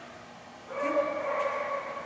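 A small dog whining in one long, steady note that starts just under a second in.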